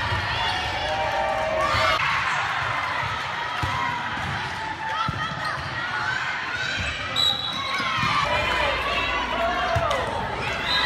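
Volleyball play in a gymnasium: players and spectators calling and shouting, with sharp thuds of the ball being served and passed several times.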